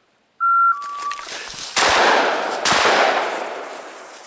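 Two shotgun shots about a second apart, each ringing out and fading through the woods, fired at a flushing woodcock that the hunter misses. They are preceded by a short loud two-note beep that steps down in pitch and a rushing noise.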